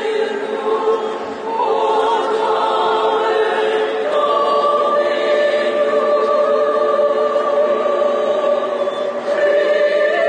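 Mixed choir of men and women singing, with long sustained chords; a new held chord sets in about four seconds in and is held until near the end.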